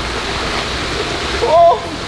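Steady rush of running water from the stingray pool's rock waterfall, with a short voiced exclamation about one and a half seconds in.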